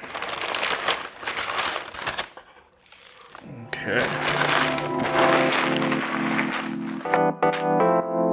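Butcher paper crinkling as a rack of smoked beef short ribs is lifted out of it, for about two seconds. After a short lull, background music with held notes comes in about four seconds in and continues.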